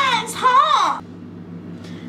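A young woman's voice making two drawn-out wordless exclamations in the first second, over a steady low hum.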